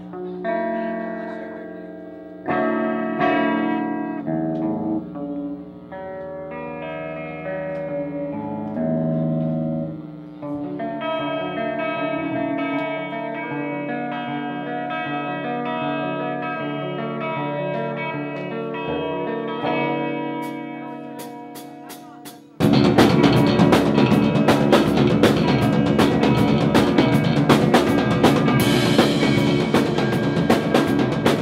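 Live rock band: an electric guitar plays a quieter intro of separate ringing notes, then, about three quarters of the way through, the drum kit and the full band come in together, suddenly much louder.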